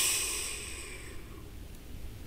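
The ringing tail of a cymbal crash in the backing track fades out over about a second as the music stops, leaving only a faint hiss.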